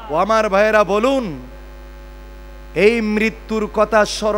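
A man's voice over a PA in long, drawn-out, chant-like phrases, over a steady electrical mains hum from the sound system that is heard alone in a pause of about a second midway.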